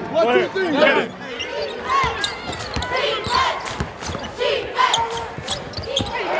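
Players shouting together in a team huddle, then basketballs bouncing on a hardwood court in a large arena, a string of sharp knocks with short calls between them.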